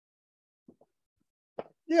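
Near silence in a pause of talk, broken by a faint tick and a short click, then a man starting to speak ("Yeah") near the end.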